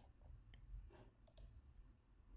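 Near silence: faint room tone with a few soft computer-mouse clicks.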